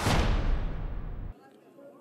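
Broadcast graphics transition sound effect: a heavy whooshing boom that hits at once, dies away, and cuts off abruptly a little past a second in, leaving faint ballpark crowd murmur.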